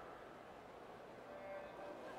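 Quiet indoor-pool ambience, and a little past halfway a faint, short electronic start tone sounds for a backstroke race.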